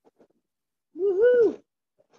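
A single short vocal sound from one person, about a second in and lasting about half a second: one wavering pitch that rises and then falls away.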